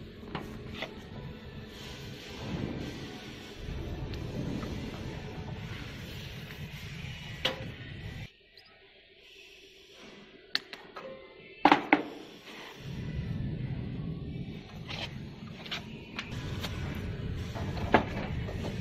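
Hands fitting water hoses and brass fittings onto a plasma cutter's water chiller: scattered clicks and knocks, with two sharp clicks from pliers on a hose clamp about two-thirds of the way through. A low background, likely music, runs under most of it and drops away for a few seconds in the middle.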